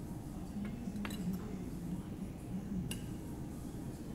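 Metal fork clinking lightly against a ceramic plate as food is picked up. There are a few short clinks about a second in and one more near three seconds, over low, steady room noise.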